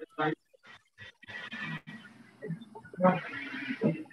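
Indistinct, muffled voice sounds and rough noise coming over a video-call connection, with a brief voiced utterance near the start and uneven, garbled sound through the rest.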